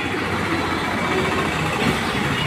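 Steady outdoor background noise with a low rumble, like distant street traffic, and faint indistinct voices.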